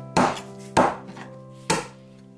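Cleaver chopping chicken thighs into chunks on a wooden cutting board: three sharp chops a little under a second apart. Soft background music with held notes plays underneath.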